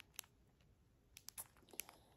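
Near silence with a few faint crinkles and clicks from a clear plastic bag of diamond-painting drills being handled.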